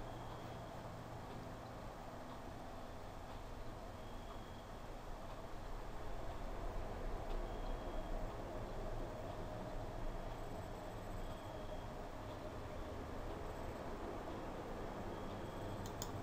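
Quiet room tone: a steady low hum and faint hiss from the recording setup, with no speech.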